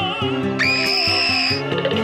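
Cartoon soundtrack of loud, warbling operatic-style singing over a guitar and band backing, with a shrill high note held for about a second near the middle.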